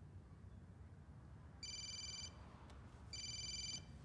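A telephone ringing with an electronic ring: two identical rings about a second and a half apart, each lasting under a second.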